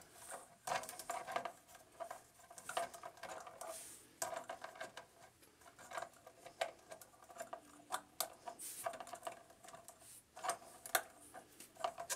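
Plastic action-figure parts clicking, rattling and scraping in irregular short bursts as the jointed figure and its armor pieces are handled and posed.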